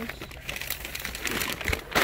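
Clear plastic bags crinkling and rustling irregularly as they are pushed aside and handled, with a louder rustle near the end.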